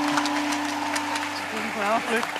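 Soft background music holding a steady chord, with a few scattered hand claps and a short burst of voice near the end.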